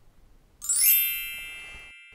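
A bright chime sound effect about half a second in: a quick falling run of high bell-like notes that rings on and slowly fades.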